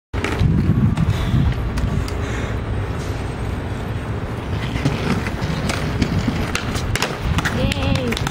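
Skateboard wheels rolling over stone paving slabs, a continuous low rumble broken by sharp clicks and knocks of the wheels and deck.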